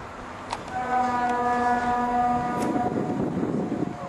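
A ship's horn sounding one steady, level blast of about two seconds, over wind noise on the microphone.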